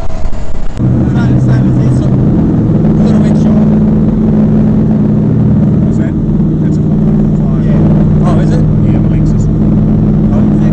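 Jet boat engine running steadily at speed, heard from on board over rushing water. For about the first second a louder, choppy rush of wind and spray is heard instead, and it cuts off abruptly.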